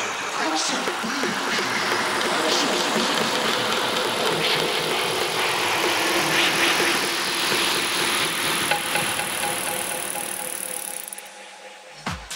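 Electronic dance music in a breakdown, mixed with the bass filtered out, leaving a loud wash of noise in the mids and highs that thins and fades in the last second or so before the beat returns.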